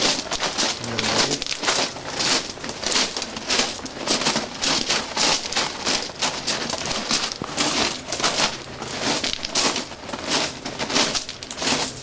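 Footsteps crunching on railway ballast gravel at a steady walking pace, about three steps every two seconds.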